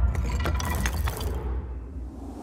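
Trailer sound design: a low rumbling drone under a scatter of small sharp clicks or drips that thin out and fade about a second and a half in.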